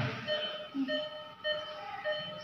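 Electronic beeping: a steady pitched beep repeating about every two-thirds of a second, three beeps in all, over faint room noise.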